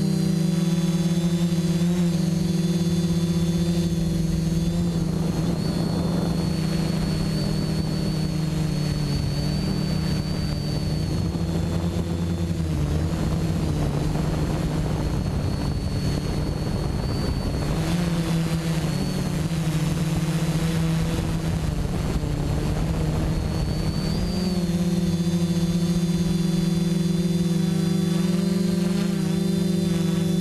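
Quadcopter's electric motors and propellers buzzing steadily, recorded from the onboard camera, the pitch shifting up and down with the throttle. A rushing noise rises over the buzz through the middle stretch.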